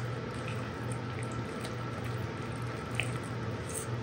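Wooden spoon stirring thick cornbread batter in a ceramic mixing bowl: soft wet squishing with a few light ticks, over a low steady hum.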